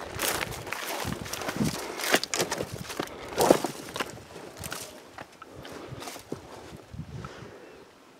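Footsteps through dry scrub brush: an irregular run of rustles, crackles and twig snaps, thinning out over the last few seconds.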